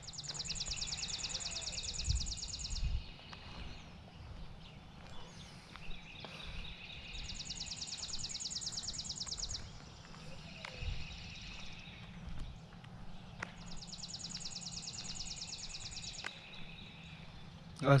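A songbird singing a rapid, high trill about two and a half seconds long, three times, about six seconds apart.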